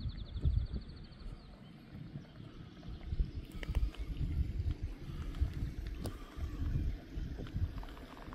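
Wind buffeting the microphone in uneven gusts. A bird's rapid high trill carries on from before and ends about a second and a half in, and a few faint ticks come later.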